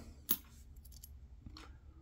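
Coins and small plastic zip bags being handled, with a sharp click about a third of a second in and a fainter click about a second and a half in.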